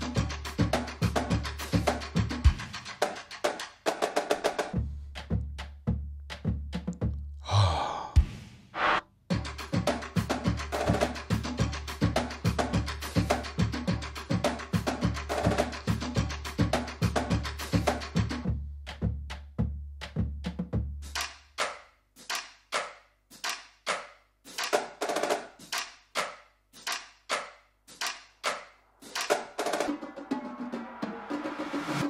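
Stomp-and-clap music built from sampled foot stomps and hand claps, playing a steady beat over a sustained low bass, with a short break about eight seconds in. From about twenty-one seconds the bass drops out and the stomps and claps carry on alone.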